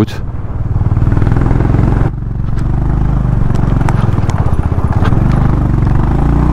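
Motorcycle engine running under way, a steady rhythmic low thumping that changes abruptly about two seconds in and then carries on. Faint light clicks and rattles sound over it.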